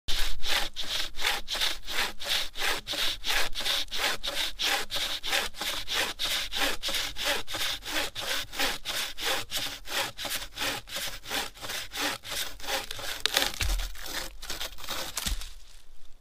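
A hand-made bushcraft bucksaw (a stick frame tensioned with cord) sawing through a log in quick, even push-pull strokes, about three a second. The strokes stop near the end with a couple of low thumps as the cut goes through.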